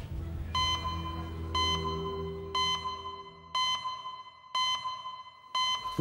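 Short electronic beeps, one a second, six in all, each a steady high tone, over a low sustained music note that fades out partway through. The beeps are a clock sound effect marking a time-stamp transition.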